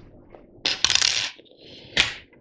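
Small metal fly-tying tools, such as scissors, clattering and scraping as they are handled, in a short cluster about half a second in. A sharp click follows near the end.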